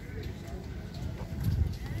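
Faint, distant voices over a low, uneven rumble on the microphone, which grows to a louder bump about one and a half seconds in.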